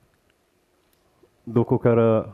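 Near silence for about a second and a half, then a man starts speaking into a headset microphone.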